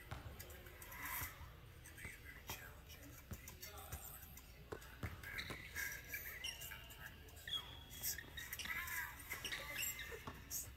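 A basketball dribbling on a hardwood gym floor, with sneakers squeaking as the players cut, heard faintly and with echo.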